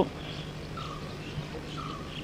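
A pause in a man's speech filled by background: a steady low hum and a few faint short bird chirps, two of them about a second apart in the second half.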